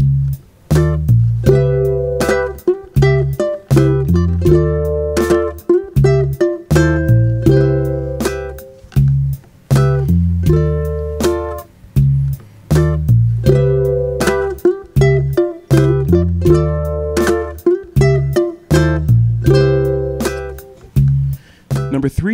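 Ukulele playing a soul fill in double-stop chord shapes, Cmaj7 to Dm7 to C with slides, over a backing track with a bass line and a steady drum beat.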